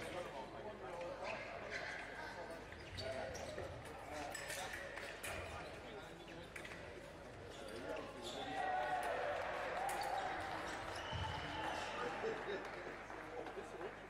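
Fencers' footwork on the piste: shoes thudding and squeaking in quick, irregular steps, with scattered light clicks, over the murmur of voices in a large hall.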